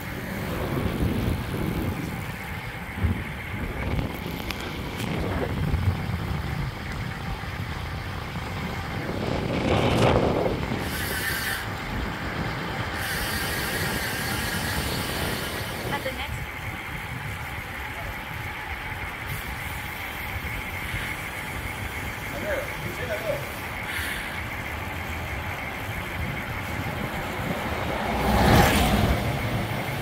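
Wind and road noise from riding a road bicycle through town traffic, a steady rumble with two louder swells of passing traffic, about ten seconds in and near the end.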